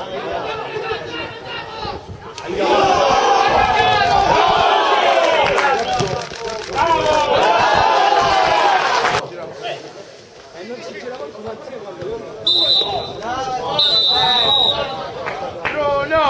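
Men's voices shouting across an outdoor football pitch, loudest in the first half. Near the end a referee's whistle blows two short blasts.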